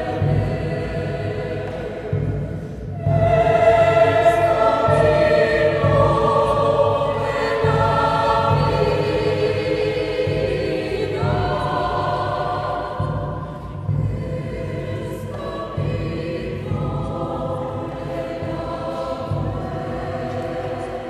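Mixed choir of women's and men's voices singing a vidala, an Argentine folk song form, in sustained chords; the sound swells about three seconds in and the harmony shifts several times.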